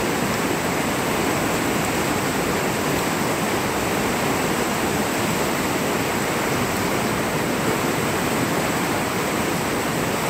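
A fast, swollen creek rushing in whitewater over its bed: a steady, unbroken roar of running water.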